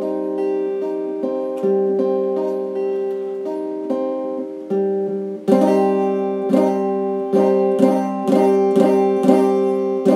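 Electric guitar played with a pick: single notes of a chord picked one after another, then from about halfway louder strummed chords at roughly two strokes a second.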